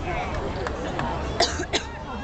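Someone near the microphone coughs twice in quick succession about a second and a half in, over background crowd chatter.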